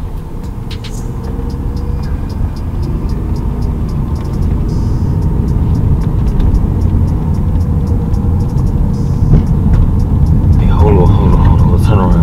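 Inside a moving car: low road and engine rumble that grows steadily louder, under background music, with a voice coming in near the end.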